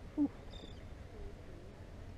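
A seagull gives one short, high-pitched cry about half a second in.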